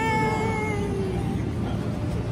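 A person's long, high-pitched drawn-out vocal call, held for about a second and slightly falling in pitch before it fades. Under it runs a steady low rumble.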